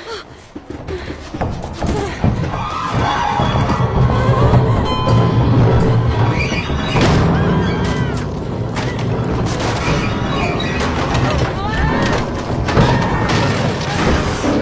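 Film soundtrack: a dramatic music score with low booms and thuds under it, and some high rising-and-falling cries near the middle and again later.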